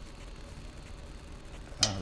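Quiet background: a steady low hum with faint room noise and no distinct mechanical event.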